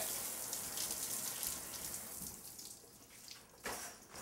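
Water spraying from a showerhead in a tiled shower, a steady hiss that gradually fades away. A short, sharp noise comes near the end.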